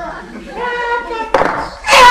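Voices hold long, drawn-out sung or called notes. A single sharp clap comes about a second and a half in, and just before the end a crowd of voices breaks into loud shouting and cheering.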